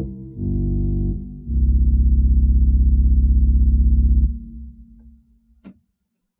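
Virtual pipe organ sounding samples of an 1898 Hope-Jones organ through loudspeakers: a brief chord, then a long held chord over a deep pedal bass whose loudness pulses, the rumble of the 32-foot resultant. The chord is released about four seconds in and dies away in reverberation, and a single click follows near the end.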